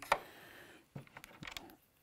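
Faint scraping and a few light clicks from a hand-cranked Forster Original Case Trimmer as the neck-turning cutter is backed off the brass case neck while the case is still spinning. A small click comes at the start, and a few more come about a second in.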